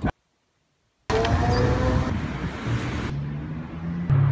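About a second of silence, then a few seconds of outdoor street noise, with a vehicle's low steady hum near the end.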